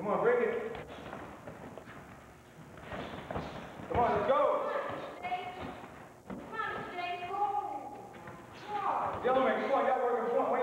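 Voices calling out in bursts during a sparring bout, with a few dull thuds in between.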